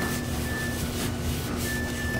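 Paper towel rubbing across a cabinet shelf, a steady scrubbing swish as the shelf is wiped clean.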